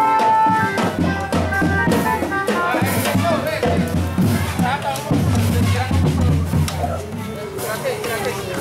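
Marching-band drums being struck at random, with children's voices over them. A held melody note stops within the first second.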